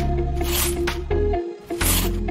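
Background music with held bass notes and a steady higher tone that shift pitch about a second in, with short hissing swishes at the start and near the end.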